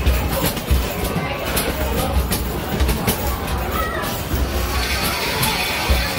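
Arcade mini basketball machine in play: basketballs knocking against the backboard and hoop again and again in quick succession. Loud game music and arcade hubbub run underneath.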